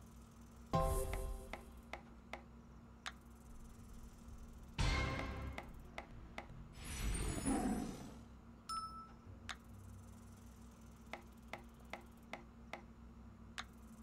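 Online video slot sound effects: runs of short reel-stop ticks through the spins, a brief chime about a second in, and two louder rushing effects around five and seven seconds in.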